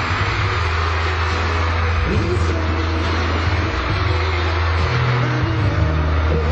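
Loud live pop music over arena speakers, recorded from the audience, with heavy sustained bass notes and a dense wash of higher sound on top.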